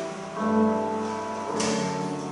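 Church organ playing slow, sustained chords, with a new chord entering about half a second in. A brief noise cuts across the music near the end.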